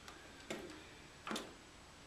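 Two short, sharp clicks about a second apart over faint room noise, the second one louder.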